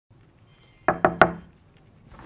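Three quick knocks on a wooden door, in fast succession about a second in.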